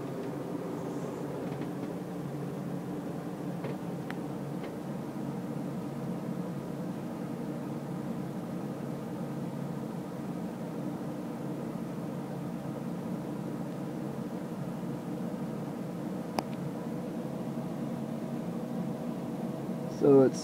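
A steady low hum with several layered tones and a few faint, isolated clicks.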